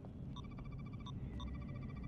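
Computer console beeping: two stretches of steady, high electronic chirps, each about half a second long, over a steady low hum.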